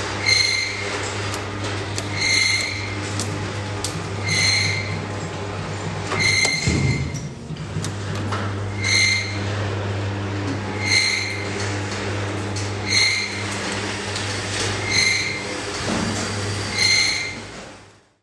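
Metal struck about once every two seconds, each strike ringing out with a clear high tone, over a steady low hum; it fades out at the end.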